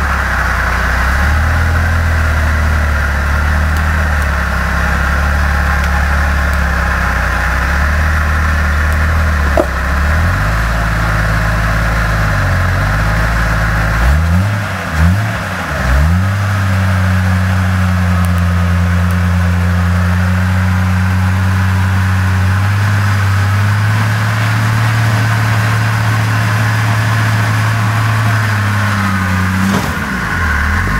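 Off-road Jeep's engine working at low revs as it crawls up a rock ledge. Three short revs about halfway through, after which it runs steadily at higher revs under load.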